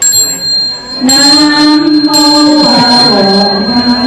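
A small metal bell struck at the start and ringing on with a clear, high, steady tone. From about a second in, singing plays over it.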